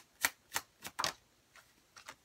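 A deck of tarot cards being overhand shuffled, packets of cards slapping down onto the deck in a quick rhythm of about three a second, fading to a few faint taps after the first second.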